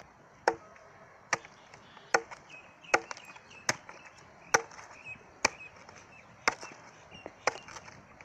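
A curved sickle-like chopping blade hacking a roasted chicken into pieces on a wooden log: about ten sharp chops at a steady pace, a little under a second apart, each going through meat and bone into the wood.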